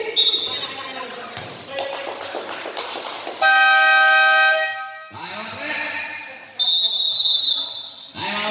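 Basketball game horn sounding one steady blast of under two seconds a few seconds in, then a referee's whistle blown in one long high blast near the end, over crowd voices in the gym.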